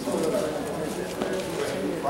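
Indistinct low male voices murmuring, with no clear words.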